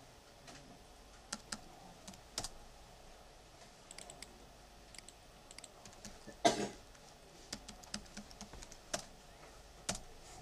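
Computer keyboard keystrokes and mouse clicks, scattered single taps rather than a steady run. One louder, short noise about six and a half seconds in.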